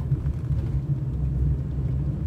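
Moving car heard from inside its cabin: a steady low rumble of engine and road noise.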